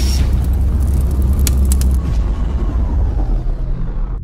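Logo-intro sound effect: a loud, deep rumble with a few sharp clicks about a second and a half in and a faint falling tone in the second half.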